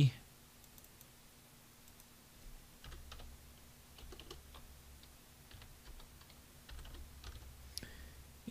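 Faint, scattered keystrokes on a computer keyboard over a low steady hum.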